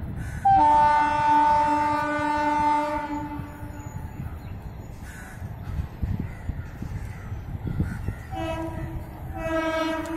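Horn of an Indian Railways WAP7 electric locomotive sounding two long blasts as its train approaches. The first blast starts about half a second in, is loud and lasts about three seconds. The second, fainter blast begins near the end.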